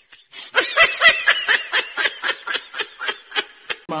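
Rapid laughter: a run of short, snickering bursts at about six a second, starting about half a second in and stopping just before the end.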